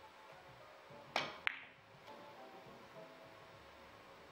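Three-cushion billiards shot: the cue striking the cue ball a little after a second in, then, about a third of a second later, a sharp ringing click as the cue ball hits an object ball. Faint background music plays underneath.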